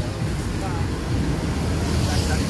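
Outdoor background noise: a steady low rumble of wind on the microphone and street traffic, with faint voices.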